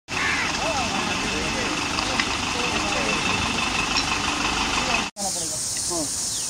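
A truck engine running close by, under the chatter of a roadside crowd. The sound breaks off abruptly about five seconds in, and a few voices follow over quieter surroundings.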